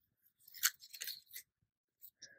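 Faint, crisp rustling of pitcher plant leaves brushed by a hand: three or four short crackles, the loudest a little over half a second in.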